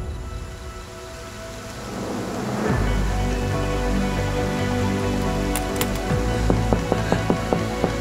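Steady rain under a slow, dark music score of held tones, with a deep bass swelling in about three seconds in. Near the end comes a quick run of sharp knocks, a hand rapping on a door.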